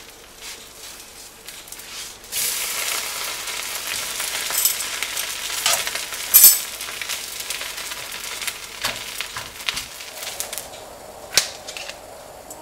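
Thin flour-batter sheet sizzling in a nonstick frying pan, the hiss coming in about two seconds in and running steadily, with a few sharp clicks over it.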